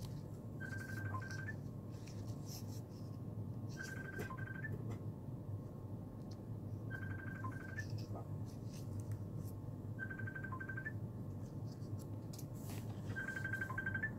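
A repeating electronic trill: a short burst of rapid high beeps about every three seconds, each followed by a brief higher blip, over a steady low hum. Faint rustles and clicks come from the satin ribbon and plastic hairband being handled.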